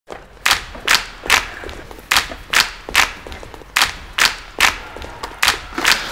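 Rhythmic hand claps in groups of three, about two claps a second with a short pause between groups, repeated four times like a crowd's chant rhythm.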